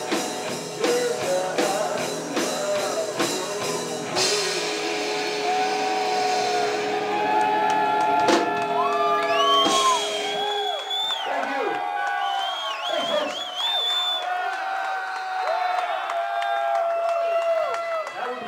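Live rock band with drum kit, electric guitar and bass playing the end of a cover song. The band stops about ten seconds in, leaving ringing notes and whoops and whistles from the audience.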